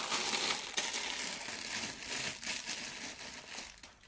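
Clear plastic packaging bag crinkling and rustling as it is handled and lifted, a continuous crackle that fades out just before the end.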